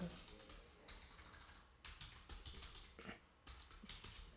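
Faint computer keyboard typing: a scatter of irregular key clicks as a short command is typed.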